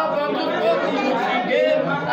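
Several men's voices at once, chatter mixed with unaccompanied sung phrases, in a large room with no percussion.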